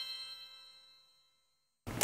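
The ringing tail of a bell-like chime sting, several high tones held together and fading out, dying to silence about a second in. Room tone cuts in abruptly just before the end.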